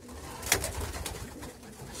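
Racing pigeons cooing faintly in a wooden loft, with one sharp click about half a second in.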